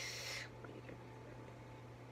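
A short breathy exhale, like a soft laughing breath, right at the start, then a quiet room with a steady low electrical hum.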